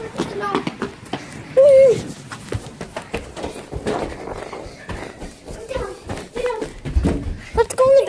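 Handling noise from a phone carried at a run: puffer-jacket fabric rubbing over the microphone, with scattered knocks and footfalls and a low rumble near the end. A girl's voice gives a couple of short sounds in the first two seconds.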